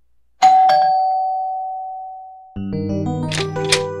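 Two-note ding-dong doorbell chime, the second note lower, ringing out and fading over about two seconds. A music cue with sustained chords starts about two and a half seconds in.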